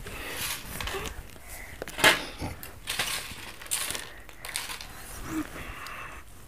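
Close-up crunching and chewing of crisp snacks, with irregular sharp crackles, the loudest about two seconds in.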